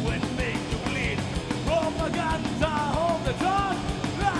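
Live thrash metal band playing: distorted electric guitars, bass and fast, driving drums, with a high melodic line that bends up and down in short repeated phrases over the top.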